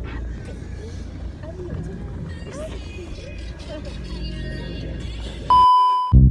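A low, steady rumble inside a car, with faint voices in the background. About five and a half seconds in, the cabin sound cuts out and a loud, steady test-pattern beep, a single tone near 1 kHz, takes over.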